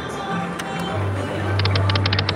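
Electronic music from the slot machine and the surrounding casino floor, with a steady low hum coming in about halfway. Near the end comes a quick run of short, high electronic ticks as a spin starts on the three-reel Buffalo slot machine.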